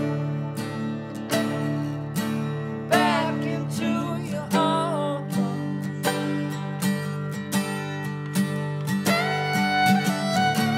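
Acoustic guitar strummed in a steady rhythm with a fiddle playing over it: an instrumental break in a live acoustic song, without singing.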